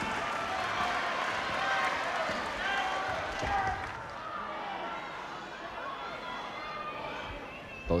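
Spectators in an arena crowd chattering and calling out, many voices overlapping, louder in the first half and dying down after about four seconds.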